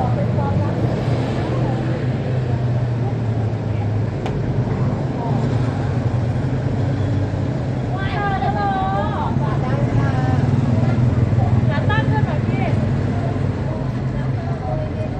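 Busy street traffic, a steady mix of vehicle engines and passing motorbikes, with a person's voice speaking briefly twice, around the middle and again a few seconds later.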